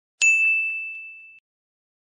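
A single bell-like ding sound effect: one strike with a clear high ring that fades out over about a second, on an otherwise silent track. It marks a tally counter going up.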